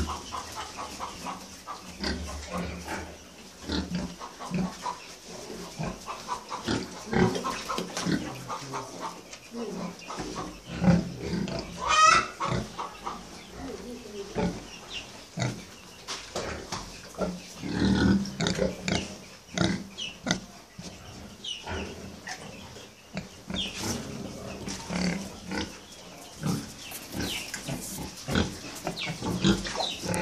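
Pigs grunting in a pen: many short, uneven grunts one after another, with a brief high sound rising steeply about twelve seconds in.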